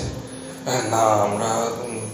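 A man's voice in Bengali narration: one long, drawn-out utterance with a fairly level pitch, starting just before a second in.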